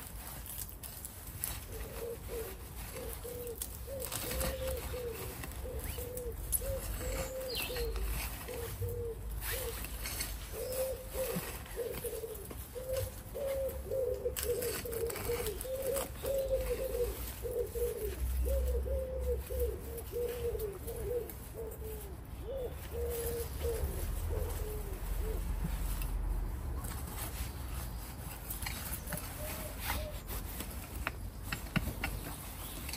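A pigeon cooing in repeated low phrases that stop a few seconds before the end, over faint scraping and knocking of a hand fork working compost.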